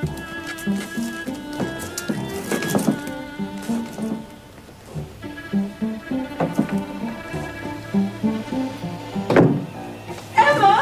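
Background music: incidental score with short notes repeating in a steady rhythm. A few knocks sound over it, the loudest near the end.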